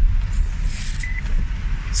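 Road and wind noise inside the cabin of a quiet electric car on the move: a steady low rumble under a light hiss, with a short high beep about a second in.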